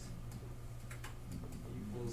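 Light, scattered ticking clicks over a steady low hum, with faint murmured speech starting in the second half.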